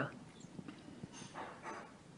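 A quiet pause between speech on a video call: faint room tone with a few soft clicks and a faint, soft sound about one and a half seconds in.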